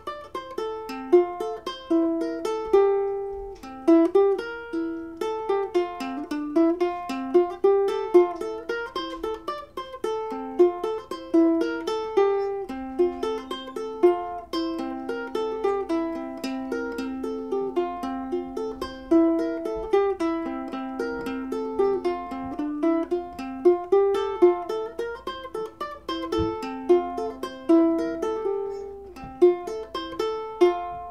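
Ukulele strung with Rotosound "Ukes with Alex" low-G nylon strings, played solo fingerstyle: a melody of single plucked notes and chords, each ringing and dying away.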